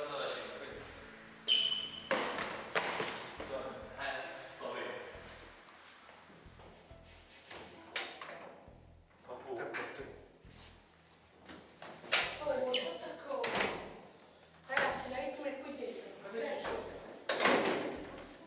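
Indistinct voices talking in a hallway, with a short high ping about a second and a half in and a few sharp clicks.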